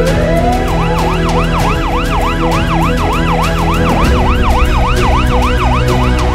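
Ambulance siren: a slow wail sweeps up, then from about a second in it switches to a fast yelp, rising and falling about four times a second.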